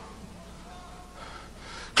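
A pause between a man's spoken phrases: faint room sound, then a quick intake of breath near the end just before he speaks again.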